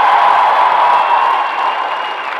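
Arena crowd cheering and applauding, a steady wash of noise that eases off slightly near the end.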